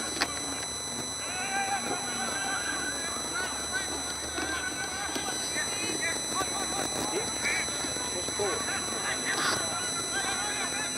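Several voices shouting and calling across an Australian rules football ground during play, short overlapping calls from players and onlookers. A sharp knock comes right at the start, and a faint steady high whine runs underneath.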